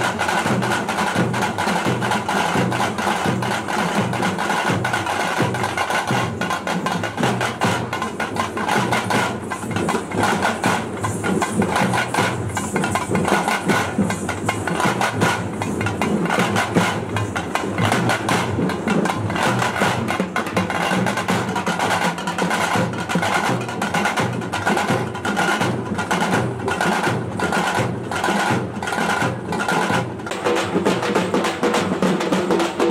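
Procession drumming: a group of large barrel drums (dhol) played with sticks, beating a fast, steady repeating rhythm.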